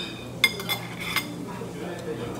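Ceramic tableware clinking: three sharp, ringing clinks of dishes being handled at a table, the first the loudest.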